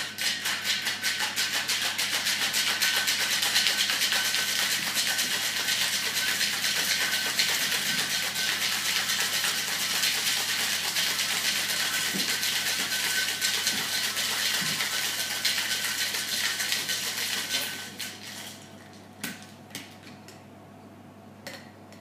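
Metal cocktail shaker shaken hard: a fast, steady rattle for about seventeen seconds that then stops, followed by a few sharp clicks as the shaker is handled. The shake is long because the drink contains egg white, to build a creamy foam.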